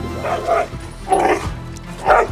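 A mixed-breed male dog barking twice on the leash, about a second apart, lunging at another dog approaching: leash reactivity that set in after he was bitten by another dog.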